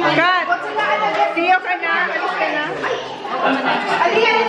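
Several people talking over one another: overlapping indoor chatter, with one voice sharply rising and falling just at the start.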